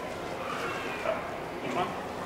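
Soft, faint voices with a short "oh" near the end, over steady room hiss.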